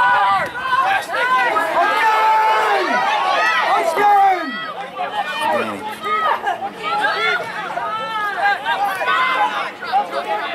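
Several people shouting and calling out at once in overlapping, unclear voices, loudest in the first four seconds and thinning a little after that.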